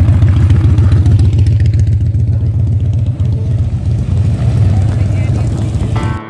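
A vehicle engine idling close by, loud and steady, with a rapid, even exhaust pulse.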